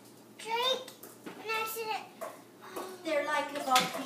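A young child's high-pitched voice, three short phrases that are not clear words.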